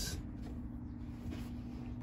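A steady low hum with a faint thin tone.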